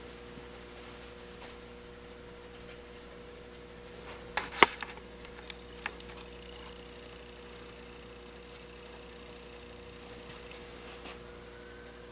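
Steady electrical hum from the running compact fluorescent bulb's ballast, a low buzz made of several even mains-frequency tones. A few sharp clicks come about four to six seconds in. Near the end a faint distant siren starts to rise.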